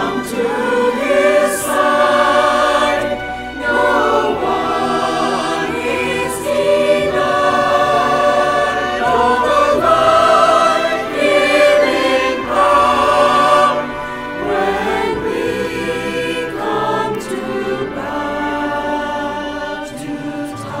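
Mixed choir of men's and women's voices singing a sacred choral piece in parts. The phrases are held long, with short breaks about a third of the way in and again past the middle.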